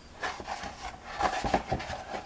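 A stiff kraft-paper journal cover handled and shifted on a tabletop: paper rubbing and rustling, with a few light taps.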